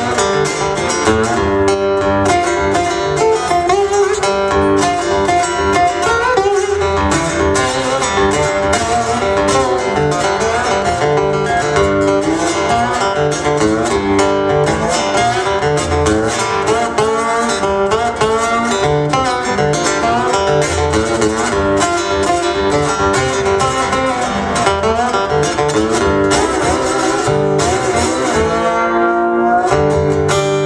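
Two acoustic guitars playing an instrumental passage, with strummed chords and picked melody notes running on without a break.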